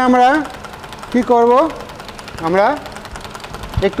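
A wood lathe running steadily with a turned wooden spindle spinning on it, its continuous motor sound heard between short bursts of speech.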